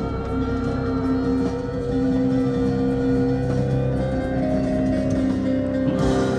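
Live rock band playing, with electric guitars, bass and keyboards holding long, steady notes.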